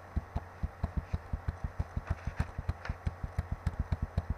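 Computer mouse scroll wheel turned steadily, giving a rapid, even run of low thumps, about six a second, over a steady low hum.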